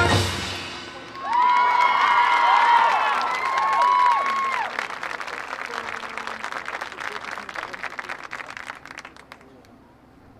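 A brass band's chord dies away, then a stadium crowd applauds and cheers, with high whoops over the clapping for a few seconds. The clapping thins and fades out near the end.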